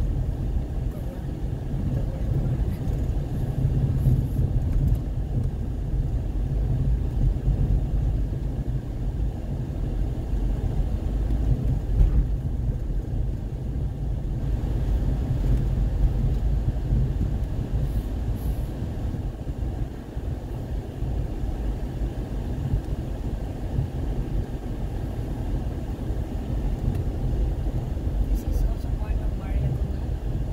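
Car driving on an unpaved dirt road, heard from inside the cabin: a steady low rumble of engine and tyres, with a few brief knocks.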